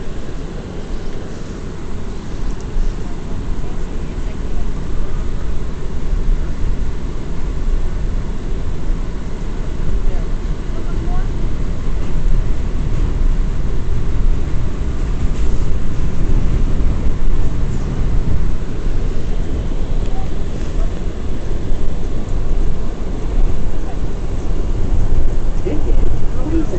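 Ride noise inside an R179 New York subway car in motion: a steady low rumble of wheels on the rails that grows gradually louder as the train gathers speed.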